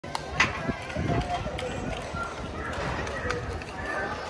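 People talking in the background, with a couple of sharp clicks near the start and a low rumble underneath.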